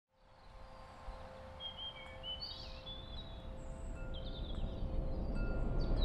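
Birds chirping in short gliding calls over a low outdoor rumble, the whole ambience fading in steadily.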